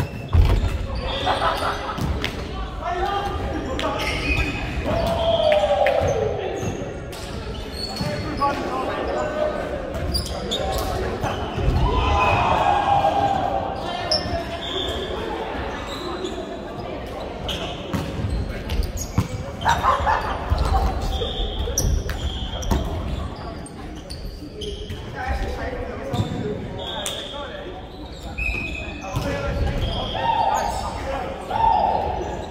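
Indoor volleyball rally: a jump serve is struck about half a second in, followed by further ball hits and bounces, players' shouts and calls, and short shoe squeaks on the wooden court, all echoing in a large sports hall.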